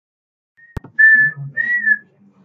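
A single sharp click, then two held, high whistled notes, the second rising slightly and then dropping away.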